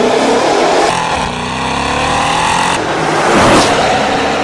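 Mercedes-AMG V8 with an iPE valve-controlled exhaust, valves open, accelerating hard. The engine note climbs in pitch, breaks off briefly near three seconds like a gear change, then comes back at its loudest.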